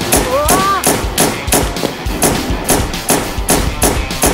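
Rapid string of gunshots, about five a second, as a toy pistol is fired again and again at prizes. A short rising-and-falling cry sounds in the first second.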